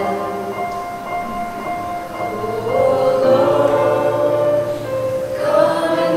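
A small mixed group of men's and women's voices singing a worship song together into microphones, in long held notes. The singing is softer for the first two seconds, grows louder about three seconds in, and a new phrase begins near the end.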